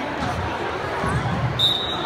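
A referee's whistle gives one short, steady blast near the end, the signal that starts the wrestling from the referee's position. Before it there are low thuds over the chatter of spectators in the gym.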